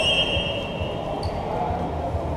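Referee's whistle held in one steady blast that cuts off just over a second in, over voices and low thumps on the court.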